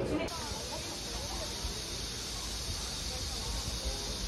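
Cicadas droning in leafy summer trees: a steady high-pitched hiss, with a few faint chirps over it.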